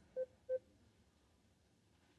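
Two short electronic beeps, a third of a second apart, from a Beam telepresence robot as a remote caller's session connects.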